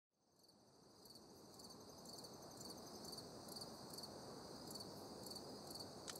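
Faint night ambience of crickets chirping in an even rhythm, about two chirps a second, over a low background hush, fading in from silence at the start.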